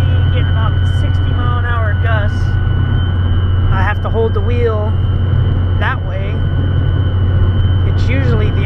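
Inside the cab of a Dodge pickup with a Cummins diesel at driving speed: a steady low engine and road drone under a steady high whistle from the curved LED light bar, which makes the truck sound like a jet. Wavering whistle tones rise and fall over it.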